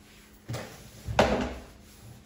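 Cloth and hand wiping the hard shell of an aluminium suitcase: two short rubbing, handling sounds about a second apart, the second louder.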